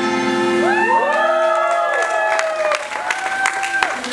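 The final chord of two acoustic guitars rings out and fades, then listeners cheer with rising and falling calls and begin clapping about two seconds in.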